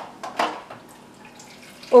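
Water from a refrigerator door dispenser running into a plastic cup, a faint steady pour, after a short knock about half a second in.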